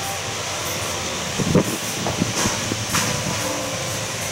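Steady rushing background noise of the room, with a few faint knocks and clicks.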